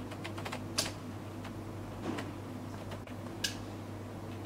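A few small, sharp clicks from a power switch as the wall light is switched off and on, the loudest about a second in and again near the end, over a steady low electrical hum.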